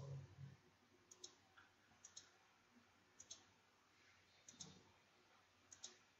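Computer mouse button clicks, faint, five of them roughly a second apart, most heard as a quick pair of ticks.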